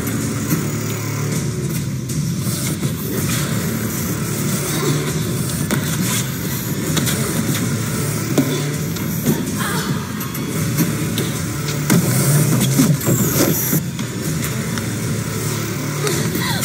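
Background music over a steadily running engine, the forklift's, with no clear starts or stops.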